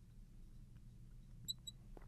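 Faint squeaks of a marker writing on a glass lightboard, with two short high squeaks near the end, over a low steady hum.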